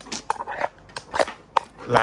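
A quick run of sharp clicks and knocks, about five in two seconds, from a dropped phone being handled and picked up.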